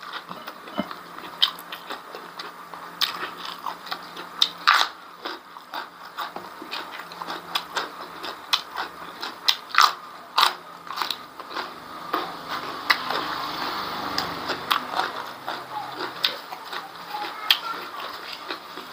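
A person eating: wet chewing and biting with many short sharp crunches and smacks, from rice, beef tripe and raw leafy greens eaten by hand.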